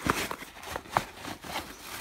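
Clothes and canvas sneakers being pushed and shuffled into a packed suitcase by hand: fabric rustling with a few short knocks.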